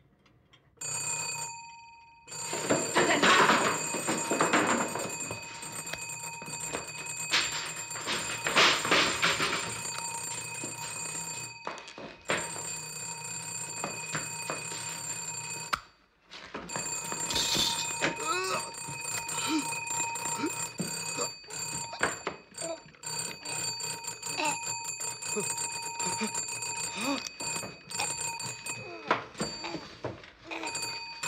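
Electric servant's bell ringing in long continuous peals, starting about a second in and breaking off briefly a few times before ringing on. It is the summons rung from the master's room for the housekeeper.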